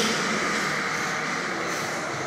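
A steady, even rushing background noise with no clear tone or rhythm.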